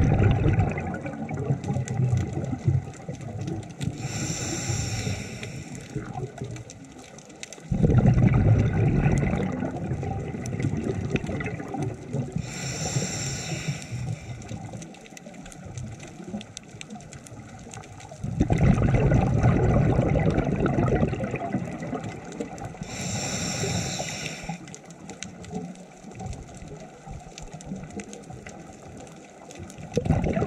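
Scuba diver breathing through a regulator underwater: a short hissing inhale, then a longer rush of bubbling exhaust bubbles, repeating about every ten seconds, three breaths in all.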